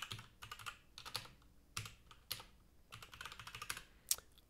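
Computer keyboard typing: a faint run of quick, irregular keystrokes.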